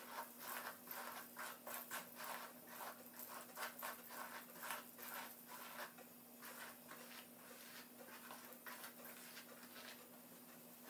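Hairbrush strokes through long wet hair: a faint run of quick, scratchy strokes, several a second, thinning out after about six seconds.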